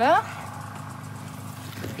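A steady low hum under an otherwise wordless stretch, after a brief rising voice at the very start.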